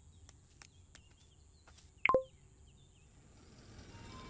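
Quiet park ambience with faint bird chirps and a few soft ticks. About two seconds in there is one short sound effect that sweeps up in pitch and settles briefly on a steady tone.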